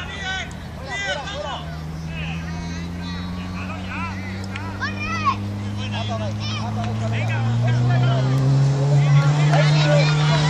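Children's shouts and calls during a kids' football game, over the low steady drone of a motor that slowly rises in pitch and grows louder in the last few seconds.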